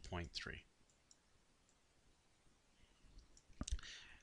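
A man's voice saying "point three", then near silence, then a single sharp click about three and a half seconds in.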